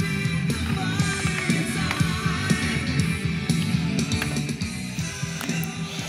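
Hard rock song playing, with electric guitar over a steady beat.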